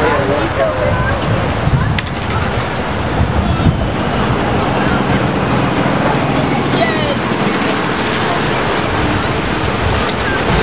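City street traffic noise: a steady rumble of passing cars and buses, with faint voices of passers-by.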